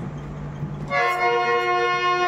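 Harmonium reeds sounding a sustained chord that comes in about a second in, its notes held steady.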